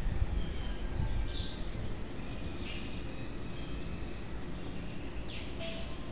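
Outdoor ambience: a steady low rumble, loudest in the first second, with birds calling over it and a few long, high whistling calls.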